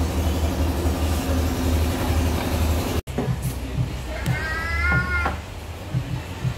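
A small child's drawn-out, high-pitched squeal lasting about a second, a little past the middle, over a low, steady rhythmic thumping. The sound breaks off for an instant halfway through.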